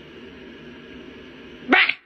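Steady low hiss, then near the end one short, loud, rising meow from a cat.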